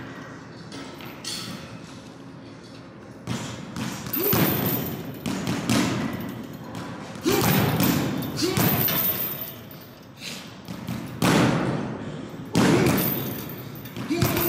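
Boxing gloves hitting punching bags: sudden, irregular thuds a second or two apart, each with a short echo, starting about three seconds in after a quieter stretch.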